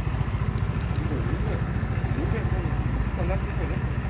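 AJS Modena 125 scooter's single-cylinder engine idling steadily, left running so the newly fitted battery can charge.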